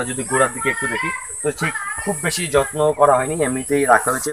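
A man talking steadily, with a chicken calling in the background.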